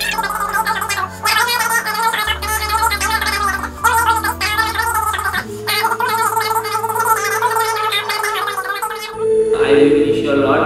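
A man's voice over background music with long held bass notes; the voice stops and the music changes about nine seconds in.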